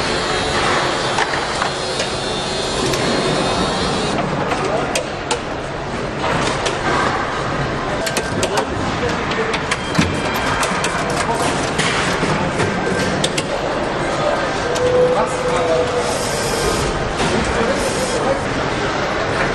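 Busy factory hall noise: indistinct voices over a steady background din, with many short clicks and knocks through the middle of the stretch.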